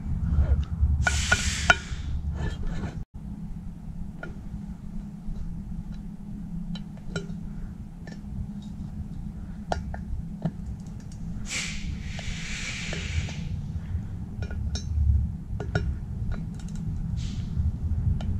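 Scattered small metallic clicks and clinks of a socket and torque wrench working the bearing sleeve's screws as they are tightened, over a steady low hum. Two brief hissing rustles come about a second in and again around twelve seconds in.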